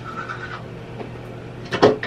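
A toothbrush scrubbing teeth, with a brief louder sound near the end.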